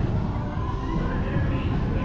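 Busy theme-park queue ambience: faint music and voices from the attraction's loudspeakers mixed with crowd noise and steady low background noise.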